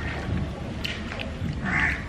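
A crow cawing once near the end, over a steady low background rumble, with a few faint clicks about a second in.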